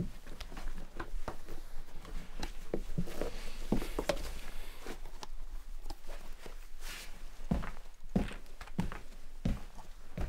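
Leather dress shoes being put on and set down, with irregular knocks and scuffs of soles and heels on a wooden parquet floor.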